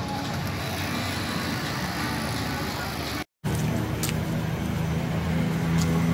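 Steady outdoor street noise with road traffic and an engine's low hum. It breaks off in a brief silence about three seconds in, and after that a steadier low hum carries on.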